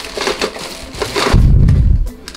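A thin plastic carrier bag crinkling and rustling as hands dig through vintage plastic toys inside it, with light clacks of the hard toys knocking together. Near the end a loud low rumble takes over.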